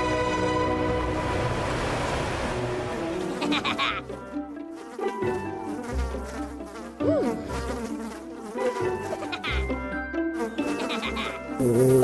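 Music for about the first four seconds. Then flies buzz close by, the buzz wavering and sliding up and down in pitch.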